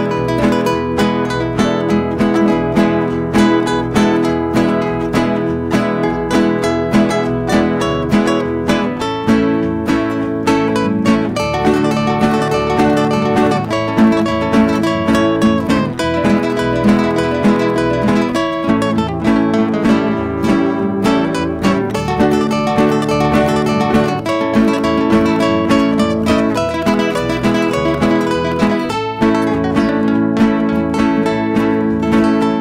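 Live instrumental Christian music from acoustic guitar and electric bass, played in a steady rhythm.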